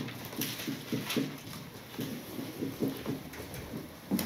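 Dry-erase marker writing on a whiteboard: a quick, irregular run of short strokes as letters are written.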